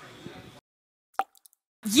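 Faint room noise cuts off into dead silence about half a second in, broken by a single short pop; a voice starts near the end.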